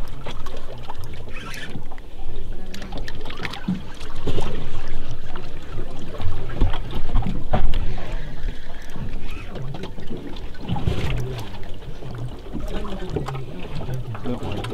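Wind rumbling on the microphone on an open boat, with water against the hull and scattered clicks and knocks from the fishing gear and boat.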